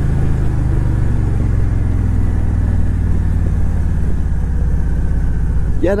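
2008 Victory Vision Tour's V-twin engine running at a steady cruise, with road noise.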